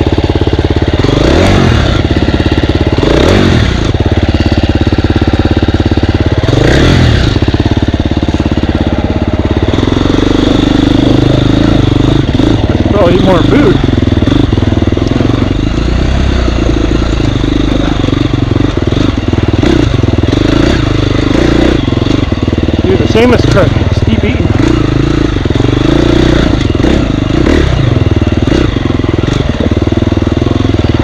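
Husqvarna dirt bike engine running under load on a rough trail, the revs rising and falling several times in the first ten seconds, then holding steadier.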